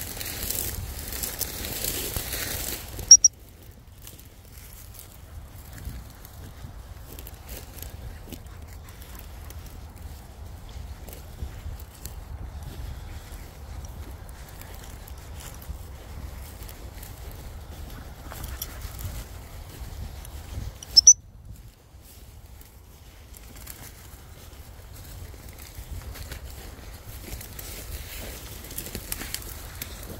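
Wind buffeting the microphone and rustling of rough grass under foot. It is broken twice by a single short, loud, high pip of a gundog whistle, about three seconds in and again about twenty-one seconds in: the usual turn signal to a springer spaniel quartering its ground.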